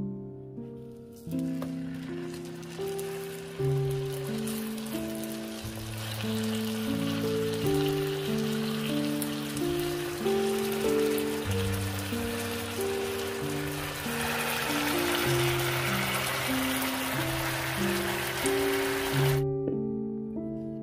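Scored chicken breasts sizzling as they fry in butter and oil in a frying pan. The hiss grows louder about fourteen seconds in and cuts off suddenly just before the end. Background music of single, piano-like notes plays over it.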